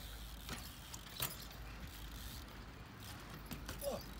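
BMX bike tyres rolling on a concrete skatepark bowl, a faint low steady rumble with a couple of light clicks.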